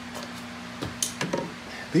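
A few light clicks and knocks in quick succession a little under a second in, as of objects handled on a workbench, over a steady low hum.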